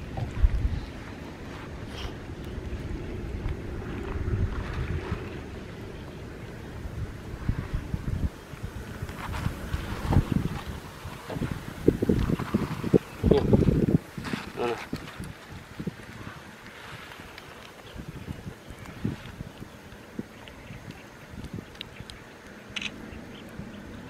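Wind rumbling on the microphone, heaviest in the first several seconds, with a cluster of louder irregular thumps and rustles around the middle.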